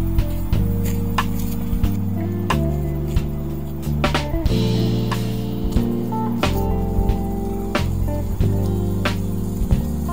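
Background music of held chords over a steady beat, with a short rush of hiss about halfway through.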